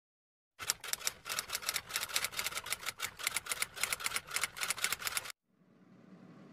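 A fast, irregular run of sharp clicks like typing on keys, several a second, starting about half a second in and stopping abruptly just after five seconds.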